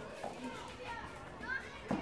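Children's voices in the background, with a tennis ball struck by a racket twice during a rally: a faint hit about a quarter second in and a sharper one near the end.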